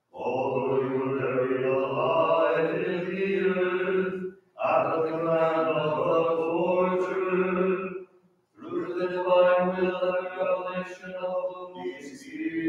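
Byzantine liturgical chant: voices singing three long phrases, each broken off by a short pause just after four seconds and around eight seconds.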